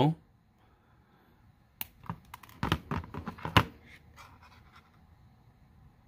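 A handful of separate sharp clicks and taps from small jewellery hand tools, flush cutters and pliers, being handled and closed on a coil of copper wire; the last click, about three and a half seconds in, is the loudest.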